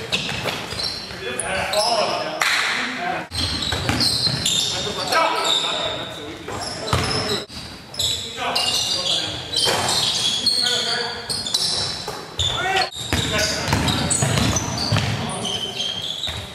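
Basketball game in a gym: the ball bouncing on the hardwood floor, short high sneaker squeaks, and indistinct players' voices, all echoing in the large hall.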